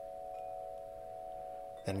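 Soft ambient background music: a few steady held notes sounding together, not fading.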